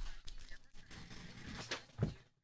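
Trading cards being handled on a table mat: faint rustling with a few brief scrapes and taps, a sharper one near the end.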